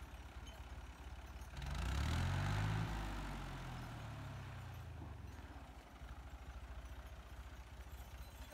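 Farm tractor's diesel engine running steadily at low revs, revved up hard about a second and a half in as it pulls over the rocks, then easing back down over a few seconds to a steady idle.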